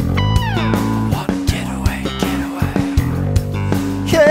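Live band of electric guitars and bass guitar playing an instrumental rock passage over sharp percussive hits. Near the start a high note slides down in pitch.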